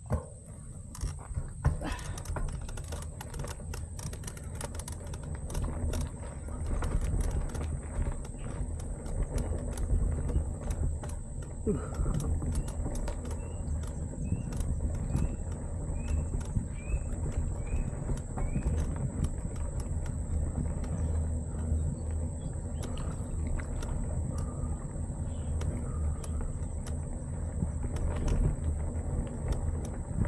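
Mountain bike ridden over a rough, uneven dirt path, with wind rumbling on the microphone and the bike rattling and clicking over the bumps. Around the middle a bird chirps several times in quick succession.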